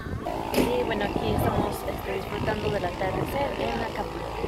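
Voices talking, over a steady low rumble.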